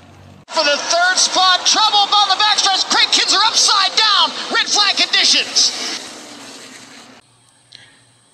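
A man's voice, race commentary, speaking over the crash replays and fading out about six seconds in, followed by a short, much quieter stretch.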